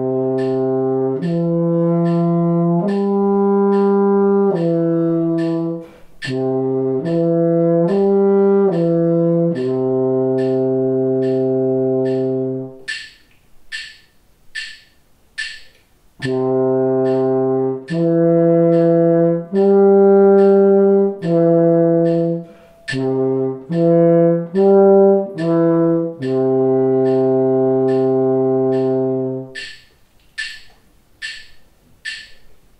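French horn playing a major arpeggio exercise twice over a steady metronome click: four longer notes up and back down the arpeggio, four quicker notes, then one long held low note. The first time the notes are slurred together, the second time each note is detached.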